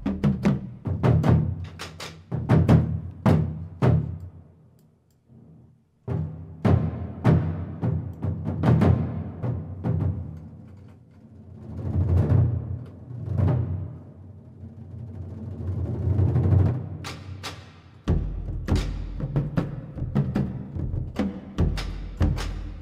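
Sampled orchestral percussion from Project SAM Orchestral Essentials' New World Percussion Kit, played on a keyboard: a run of separate hits, a mix of tonal and non-tonal, with deep pitched drum strikes and a few sounds that swell up before cutting off. There is a brief lull about five seconds in.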